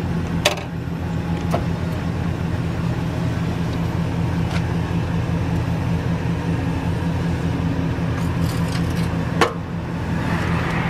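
Wheelchair lift on a conversion van lowering its platform to the ground, over a steady low mechanical hum, with a few metallic clicks and rattles, one near the start and one near the end.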